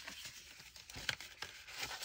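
Faint rustling and crinkling of thick painted paper being folded and handled by hand, with a few soft, brief scrapes and clicks.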